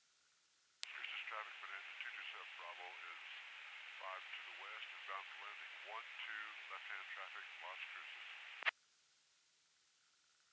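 A voice transmission over the aircraft radio, heard narrow and tinny through the headset audio, lasting about eight seconds. A sharp click sounds as it keys on about a second in, and another as it cuts off near the end.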